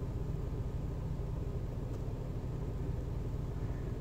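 Steady low hum and rumble inside a car cabin, the background sound of the car running.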